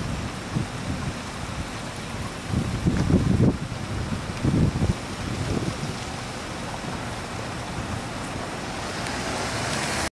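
Outdoor street noise of wind on the microphone and road traffic, with low rumbling swells about two and a half and four and a half seconds in.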